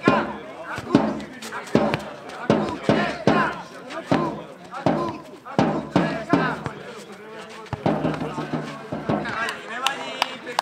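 A nohejbal rally: the football knocks sharply off feet and heads, roughly once a second, amid shouting players' and spectators' voices.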